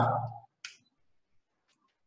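A man's spoken word trails off, then a single short click about half a second later, followed by near silence.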